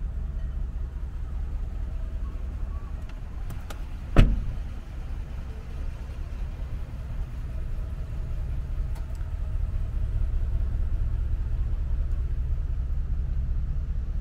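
A pickup's rear crew-cab door shutting with one loud thud about four seconds in, over a steady low rumble.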